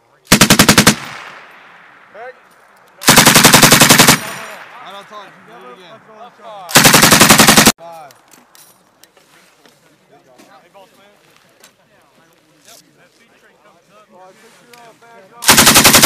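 M240B 7.62 mm machine gun firing short bursts of rapid, evenly spaced shots: a brief burst about half a second in, a longer one of about a second at three seconds, another at seven seconds, and a fourth starting just before the end.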